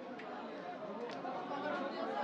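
Background chatter of several voices, with two or three sharp ticks of a cleaver striking a wooden chopping block as a tilapia is scaled and cut.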